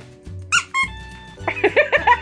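Plush squeaky dog toy squeaking: two short squeaks about half a second in, then a quick run of squeaks, several a second, near the end. Background music plays throughout.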